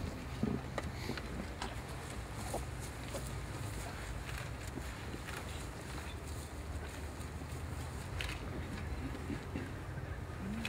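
Quiet outdoor ambience: a steady low hum with a few faint, brief scattered sounds and no speech.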